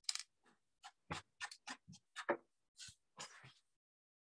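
A run of faint, short clicks and taps at an uneven pace, about a dozen in three and a half seconds, stopping shortly before the end.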